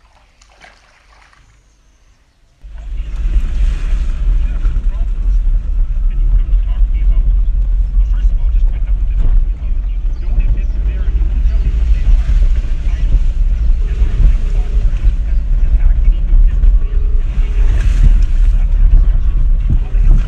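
Wind buffeting a phone's microphone inside a car: a loud, uneven low rumble that sets in suddenly about two and a half seconds in, after a quiet start.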